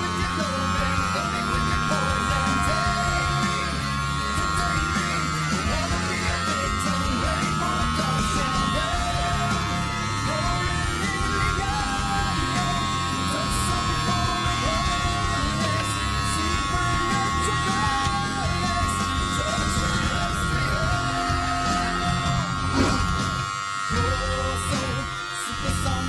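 Background music playing over the steady buzz of corded electric hair clippers cutting hair close to the scalp.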